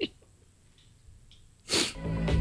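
The tail of a man's laugh, then a short quiet spell, then near the end a single short, loud burst of breathy, hissing noise.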